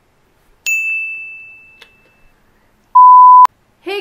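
A single electronic chime rings out about two-thirds of a second in and fades away, followed near the end by a short, very loud steady beep of one pure pitch that cuts off with a click: sound effects added in editing.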